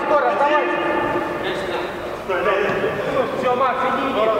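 Men's voices calling out across an indoor five-a-side football pitch during play, with a short lull about halfway through.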